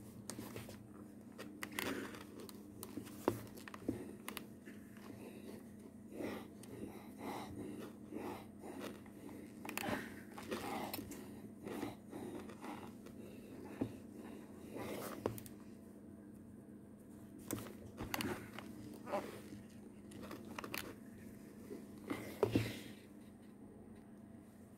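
Quiet, irregular handling sounds of ironing: soft clicks, taps and brief rustles as a steam iron is set down and slid over small crochet pieces on a cloth, over a faint steady hum.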